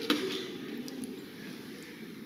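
A steady low room rumble with a short sharp knock near the start and a few faint clicks of handling.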